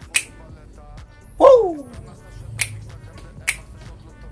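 Three sharp finger snaps over quiet rap music, with a loud pitched swoop falling steeply in pitch about one and a half seconds in.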